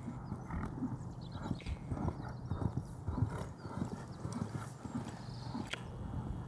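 A ridden horse's hooves striking a sand arena surface, a run of dull thuds several times a second as it trots.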